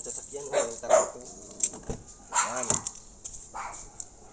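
A dog barking several times, in two short bursts.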